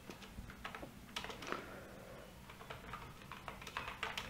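Computer keyboard typing: a run of faint, irregularly spaced keystrokes.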